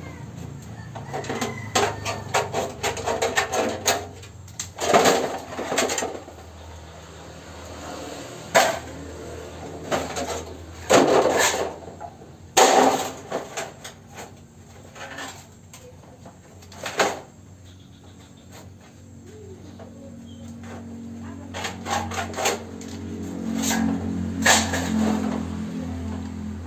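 Tin snips cutting used corrugated zinc roofing sheet: a run of short metal snips, broken by several louder rattles of the thin sheet as it is shifted and bent.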